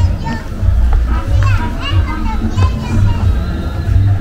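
A young child's high-pitched voice calling and chattering repeatedly, with other voices in the street, over a steady low rumble.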